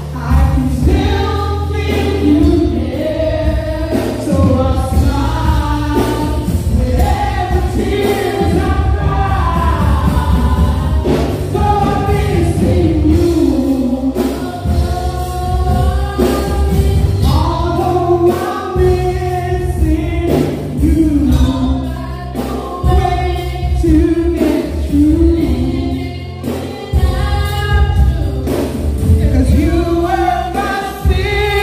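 Gospel music: several voices singing together through microphones over a steady bass line and drums.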